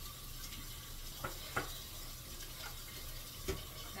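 A cooking spoon stirring water in a large pot on the stove, with a few light knocks of the spoon against the pot. The water is heating and has not yet come to a boil.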